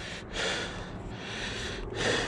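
Mountain biker breathing hard close to the microphone, in long breaths with short pauses, over the steady rush of wind and tyre noise while riding a dirt trail.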